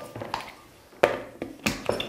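Four light taps and clicks in the second half as the lid of a glass blender jar is handled and fitted on.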